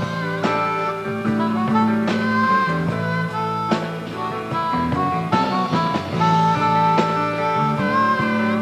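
Blues harmonica played into a handheld microphone, long sustained notes with some bending in pitch, over a band accompaniment with guitar.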